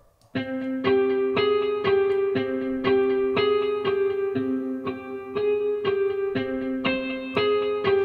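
A melody played by an Omnisphere software-synthesizer preset from a looping MIDI clip, a new note about twice a second over held lower notes. Every note is at the same velocity.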